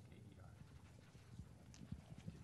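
Near silence: hearing-room tone, with a few faint low knocks in the second half.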